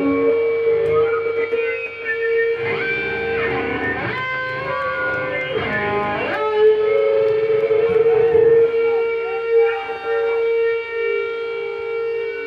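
Electric guitar playing alone through an amplifier: one note held steady throughout, with sliding notes played over it from about three to six seconds in.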